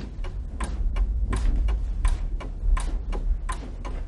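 Rhythmic hand-clapping in a steady pattern: a louder clap about every two-thirds of a second with lighter claps between, over a low rumble.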